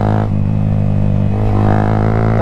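Yamaha motorcycle engine running steadily through a loud aftermarket exhaust while cruising in fourth gear. The exhaust note softens for about a second, as the throttle eases, then comes back fuller.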